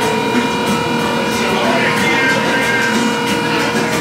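Pizzeria counter ambience: a steady machine hum holding one pitch, over a busy background of faint voices and light clatter.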